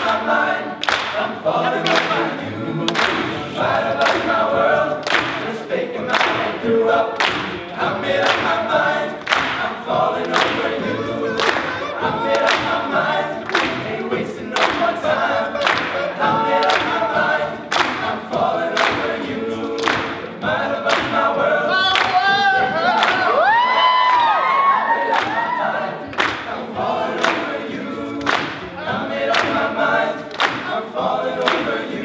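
All-male a cappella group singing a pop song live in close vocal harmony over a sharp, steady beat of about two strokes a second. From about 22 seconds in, a high voice sings swooping runs above the group.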